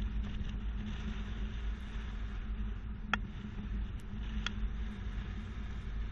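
A 2020 Infiniti QX80 driving slowly through slalom turns, heard from a camera on its hitch-mounted bike rack: a steady low rumble of engine and road noise. Two faint short clicks come about three and four and a half seconds in.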